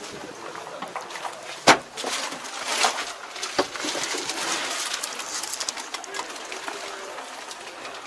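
Handling noises of someone climbing into a tractor cab. There is one sharp, loud knock about two seconds in, then a few smaller clicks and rustles over steady background murmur.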